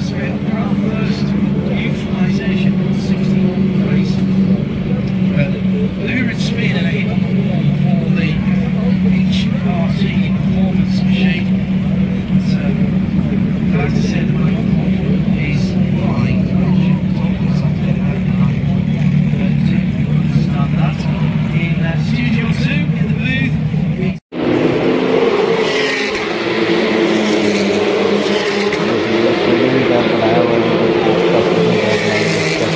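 Race car engines running on the circuit as a steady drone under crowd chatter. About three quarters of the way through, the sound drops out for an instant and comes back harsher and higher, with the engines nearer.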